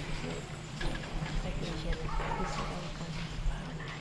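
Quiet auditorium: faint, indistinct murmuring from the audience with scattered light taps and footsteps, over a steady low hum.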